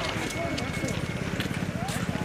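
Several people's voices talking in the background, over a low, fast, even pulsing rumble. A faint thin tone is held for about a second and a half in the middle.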